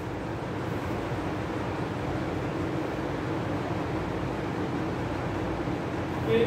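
Steady room noise: an even hiss over a low hum, with no distinct events.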